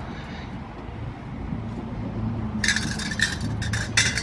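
A steady low hum of store background, then about two and a half seconds in a rattle of clinking metal lasting about a second and a half, as hanging stainless steel utensils on a wire rack are handled.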